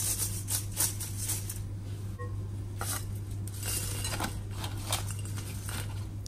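Crisp deep-fried chicken pieces shaken in a stainless steel mesh strainer, rattling and clinking against the metal: a dense run of clinks in the first couple of seconds, then scattered ones. A low steady hum runs underneath.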